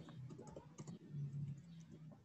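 Typing on a computer keyboard: a quick run of key clicks as a word is typed, with a brief low hum about halfway through.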